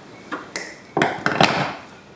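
Metal hand tools being handled at a coax cable end: a couple of light clicks, then several louder sharp metallic pings with a brief ring, the loudest about a second in.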